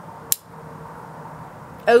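Steady low background hiss with one short sharp click about a third of a second in. A man's voice starts near the end.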